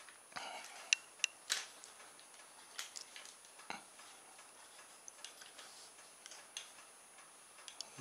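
Plastic clicks and light knocks from a Miranda TP35 tripod's pan-and-tilt head as its pan handle and quick-release bracket are worked by hand. A few sharp clicks come in the first couple of seconds, then scattered lighter ticks.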